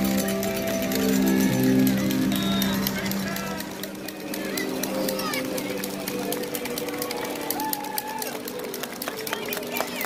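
Music from a live roadside band, whose held notes fade after about three seconds. After that come spectators' voices and the quick patter of running footsteps.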